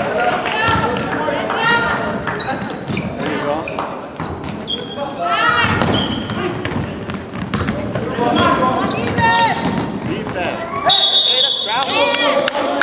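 Indoor basketball game in an echoing gym: a ball bouncing on the court, short high squeaks of sneakers on the floor, and players' voices. A steady high-pitched tone sounds about a second before the end.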